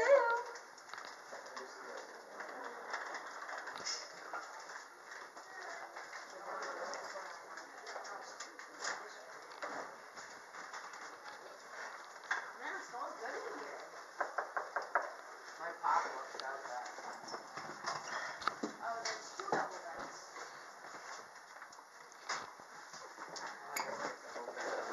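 Low, indistinct voices with scattered short knocks and clicks from people moving about and handling things.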